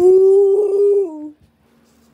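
A child's voice holding one long, steady note, the word "one" drawn out, which stops about a second and a half in.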